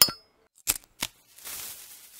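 Edited-in sound effects for an animated logo: a sharp metallic clink with a short ring, then two quick clicks under a second later, and a faint hiss near the end.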